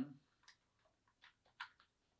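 A few faint, scattered clicks and taps of a USB power plug being fitted into a small plastic Wyze Cam v2 while it is handled.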